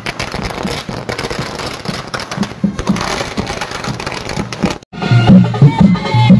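Music with dense clattering percussion. Just before five seconds in it cuts out briefly and comes back with a strong, repeating bass and a clear melody.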